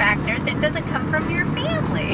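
Voices talking inside the cabin of a moving 2022 Kia Carnival minivan, over its steady road noise.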